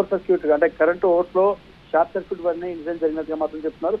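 Continuous speech only: a news reporter talking in Telugu, with a thin, narrow sound like a voice over a phone line.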